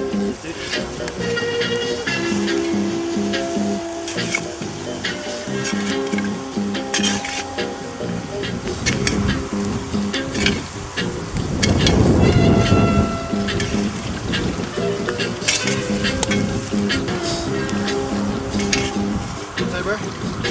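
A song with a steady beat plays over hot hangi stones sizzling as wet cloths are laid on them. The loudest moment is a rush of steam about twelve seconds in.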